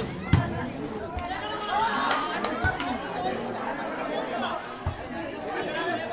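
Spectators chattering and shouting, broken by sharp slaps of a volleyball being struck. The loudest hit comes just after the start, with a few more around two seconds in and one near five seconds.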